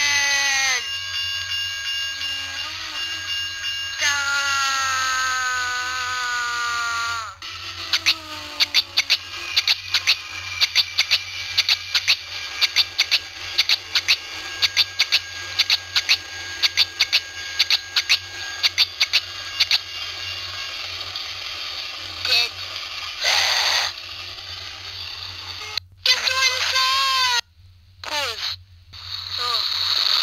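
The soundtrack of a Flipnote Studio animation from a Nintendo DSi: wordless, pitch-shifted voice sounds with a long falling wail about four seconds in. After it comes a long run of rapid clicks and crackle, then scattered short bursts near the end.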